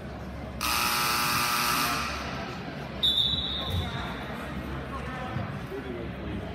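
A gym scoreboard horn sounds for over a second to end a timeout. About a second later a referee's whistle gives one sharp blast. Crowd and bench chatter runs underneath, echoing in the large hall.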